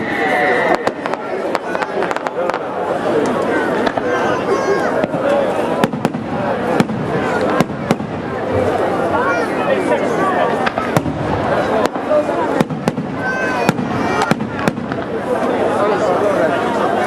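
Aerial fireworks display: sharp bangs and crackles of shells going off at irregular intervals.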